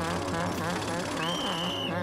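Construction machinery engine running steadily with a low throbbing drone, and a brief steady high tone like a whistle about a second and a quarter in.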